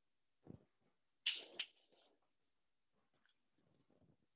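Chalk writing on a blackboard: a faint tap, then a short scratching stroke about a second in that ends in a sharp tap. Near silence otherwise.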